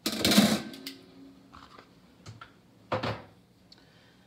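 A metal trivet rack clatters against the pressure cooker's pot and tongs as it is lifted out. The first clatter is loud and leaves a short ringing tone, and a second, shorter clatter comes about three seconds in.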